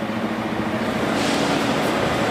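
Busy intercity bus terminal: coach engines running under a steady wash of noise, with a faint low hum.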